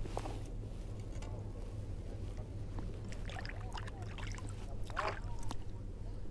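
Lake water lapping and sloshing around a wading angler under a steady low hum, with a few small clicks and handling noises about three to five seconds in as a crappie is handled on the line.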